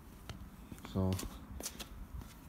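A few light scuffing footsteps on paving slabs, with scattered soft clicks.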